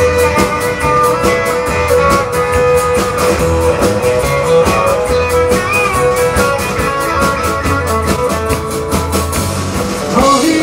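Live country band playing an instrumental passage: acoustic and electric guitars over bass and a drum kit keeping a steady beat, with one note held through most of it.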